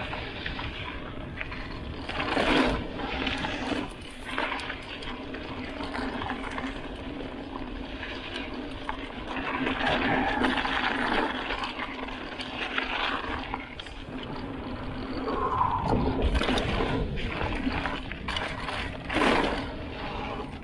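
Wind buffeting an action camera's microphone over the rush of mountain bike tyres rolling on a sandy dirt trail, with a few louder knocks and rattles as the bike goes over bumps.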